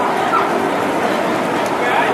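Steady crowd chatter from many voices, with a short, high, rising cry about a third of a second in and another brief high sound near the end.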